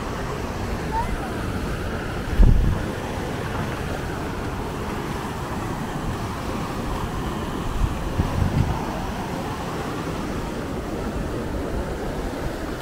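Steady rushing outdoor ambience of wind and falling water, with wind buffeting the microphone about two seconds in and again around eight seconds, and faint voices of people nearby.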